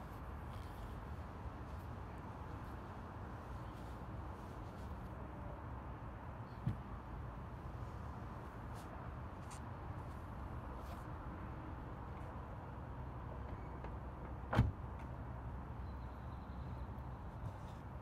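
Low, steady outdoor background rumble with two short knocks, a faint one about a third of the way in and a sharper, louder one near the end.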